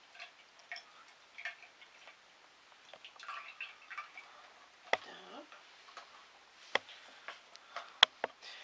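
Faint crinkling and ticking of a soft plastic cream pouch as cream is poured from it into a glass measuring cup, with two sharp clicks about five and seven seconds in.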